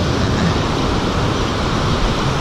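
Small ocean surf breaking and washing up the beach: a steady rush of water and foam.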